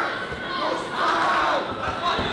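Spectators shouting and cheering at a kickboxing bout, many voices at once, swelling louder about a second in.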